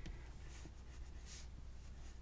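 Crayola coloured pencil shading on heavy white cardstock: faint, scratchy strokes of the pencil across the paper.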